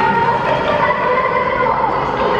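Crowd of supporters singing in chorus with long held notes, the pitch dropping near the end.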